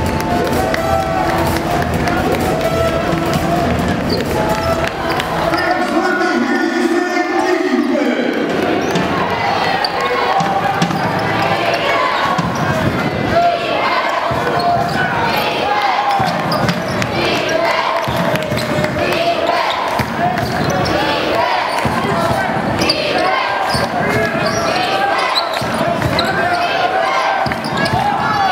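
A basketball dribbled on a hardwood court, the bounces coming about once a second, over the voices of an arena crowd. Music plays for the first few seconds.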